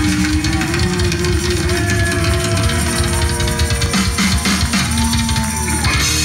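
Live rock band playing: electric guitar holding long, slightly bending notes over drums and bass.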